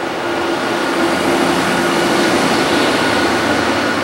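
Loud mechanical motor noise, a steady rushing sound with a low hum through it, swelling in the first second and then holding.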